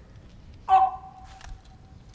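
A man's voice shouting a drill command, its last syllable drawn out and held for about a second, followed by a faint knock.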